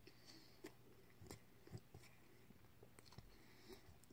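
Faint chewing of a mouthful of breakfast egg sandwich, with a few soft wet mouth clicks.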